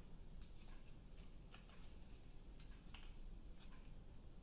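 Faint, scattered rustles and small crisp ticks of a folded paper cut-out being handled and pressed together by hand, over a low room hum.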